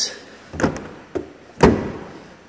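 Trunk lid of a 2016 Chevy Impala being brought down and slammed shut: a thump a little over half a second in, a light click, then the loudest sound, the slam, about one and a half seconds in.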